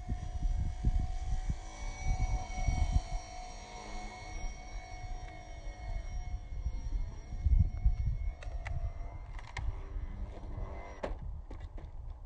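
Wind buffeting the microphone over the steady whine of a small electric RC airplane motor, played back in slow motion. A few sharp clicks come near the end.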